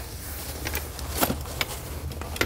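A few light clicks and rustles as a metal door-frame bar of a fabric layout blind is fed through a hole in the blind's cover, over a steady low hum.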